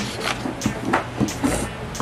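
Rubber eraser rubbing on a paper worksheet in a few short strokes, with hands shuffling the paper.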